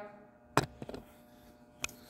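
A few sharp clicks or knocks: one about half a second in, a couple of fainter ones just after, and another near the end, over a faint steady hum.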